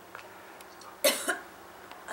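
A person coughs once, a short loud cough with two quick pushes, about a second in.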